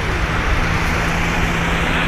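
Boeing 747-400's four turbofan engines running at high power as the jet rolls down a wet runway: loud, steady jet noise with a deep rumble and a faint low hum underneath.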